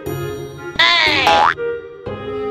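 A cartoon sound effect sweeping down in pitch for about half a second, a second into light background music, followed by a short sung 'la' near the end.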